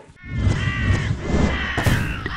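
Edited transition sound effect leading into the channel's logo card: a harsh, animal-like call over a low rumble, with a sharp hit near the end.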